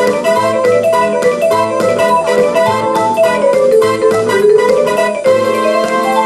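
Electronic vibraphone (KAT malletKAT Pro mallet controller) played with four mallets: a fast run of struck notes over a low bass line, with a pitch that slides down and back up about halfway through.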